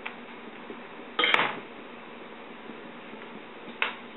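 Two short clatters of kitchen utensils against crockery on a counter, a louder one about a second in and a shorter one near the end, over a faint steady hum.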